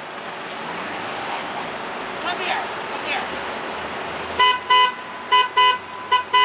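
City bus horn sounding short toots in pairs, two quick double toots in the last second and a half, over a low steady idling hum: the bus honking at a person standing in front of it.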